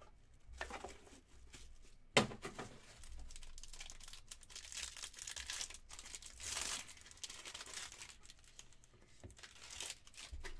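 Foil trading-card pack crinkling and being torn open by hand, after a sharp knock about two seconds in.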